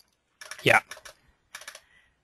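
A quick run of computer keyboard keystrokes about a second and a half in, after a single spoken "yeah".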